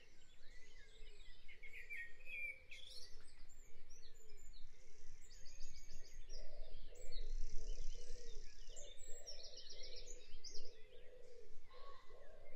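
Dawn chorus field recording: many birds chirping and trilling at once, with a lower warbling call joining about halfway through.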